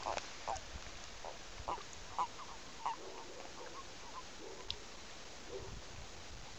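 European common toads (Bufo bufo) calling in the breeding season: a scattering of short, soft croaks at irregular intervals over a steady hiss.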